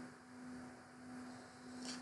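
Faint steady low hum, one even tone, over a light hiss.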